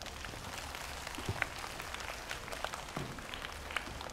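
Audience of schoolchildren applauding, a steady patter of many hands clapping at once.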